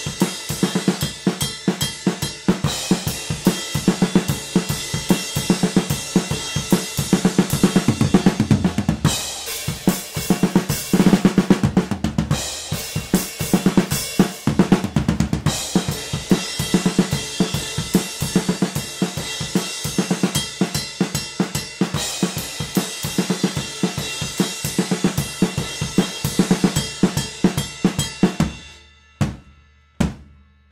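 Stereo drum-kit overhead recording playing back: a steady groove of kick, snare and ride cymbal, its cymbals ringing. Partway through, the Crane Song Peacock vinyl-emulation plugin is switched in. With it the ride cymbal's attack sits back and the kick and snare gain body. Without it the ride sticks out too much.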